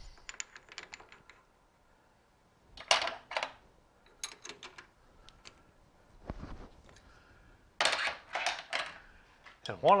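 Metal clicking and clatter from a stopped lathe's chuck as a workpiece is set in its jaws and the chuck is tightened with a chuck key. The clicks come in several short bursts, with a duller knock about halfway through.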